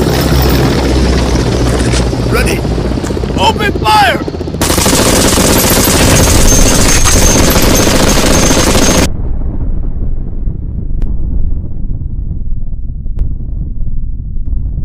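Sound-effect gunfire, like a machine gun firing in bursts, for the first few seconds, then a loud explosion blast about four and a half seconds in that cuts off sharply after another four seconds, leaving a low rumble that slowly fades.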